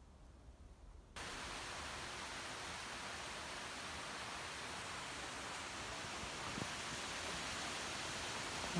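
Faint low rumble, then a steady, even hiss that sets in abruptly about a second in and holds unchanged.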